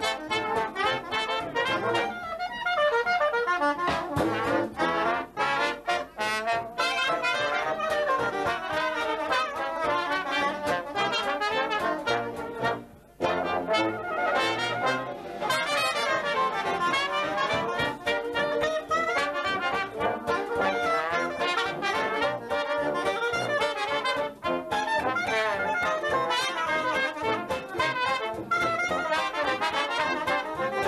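Traditional jazz band playing an instrumental chorus live, cornet and trombone leading over a rhythm section of piano, banjo, sousaphone and drums. The band drops out for a brief break about thirteen seconds in.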